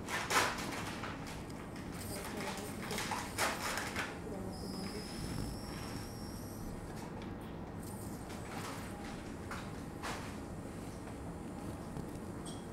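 Otologic micro drill with a diamond burr briefly running at low speed, a thin high whine lasting about two seconds midway, over low operating-room background noise with a few short faint bursts early on.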